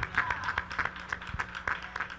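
A small congregation clapping and applauding, with dense, uneven hand claps, in answer to a call to give God praise.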